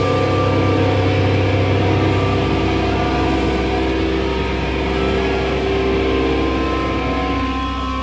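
Electric guitars ringing out through their amplifiers in long, steady sustained tones with a low hum underneath, after the drums have stopped at the end of a live hardcore song.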